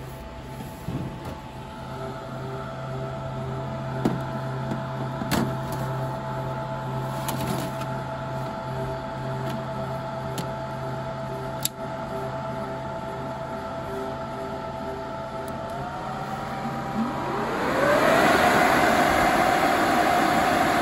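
HP ProLiant DL580 G4 server fans humming steadily while the CPU module is handled and slid into the chassis, with a few sharp clicks and knocks. Near the end the fans spin up with a rising whine and settle much louder, as a server's fans do when it powers on.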